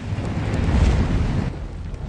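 Rushing whoosh sound effect of an animated logo sting, timed to a flaming logo build. It swells to a peak about a second in, then eases off into a low rumble.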